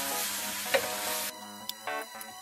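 Sliced pork and kimchi sizzling in a frying pan as they are stirred with wooden chopsticks, with one sharp tap about three-quarters of a second in. The sizzle cuts off a little past halfway, leaving only background music.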